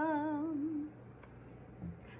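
A woman humming a held 'bum' on the song's resting tone, mouth closed. The note wavers slightly in pitch and fades out just under a second in.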